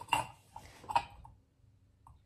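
Ceramic wax warmer and its dish clinking together as they are handled: two sharp clinks, one near the start and one about a second in.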